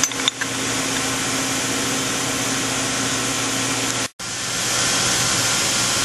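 Steady machine-shop background noise: a constant mechanical hum and hiss from running machinery. A couple of light clicks right at the start, and the sound cuts out for a moment about four seconds in.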